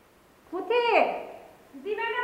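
A woman calling out in a raised, high voice: one call about half a second in that falls in pitch, then a long drawn-out call starting near the end.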